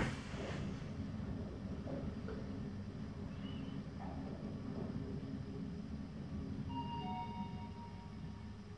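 Hitachi rope-type passenger elevator car travelling upward, a steady low hum of ride noise, with the car's arrival chime sounding as a few held tones near the end as it reaches its floor.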